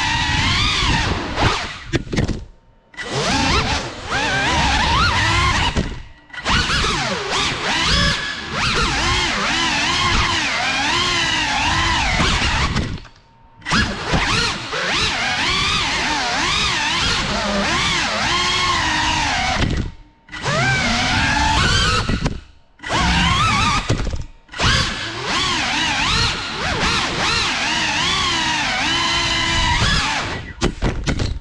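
A GEPRC Cinelog 35 ducted cinewhoop FPV drone's brushless motors and props on 6S power, heard on board, whining and rising and falling in pitch with the throttle. The whine drops out briefly several times where the throttle is cut.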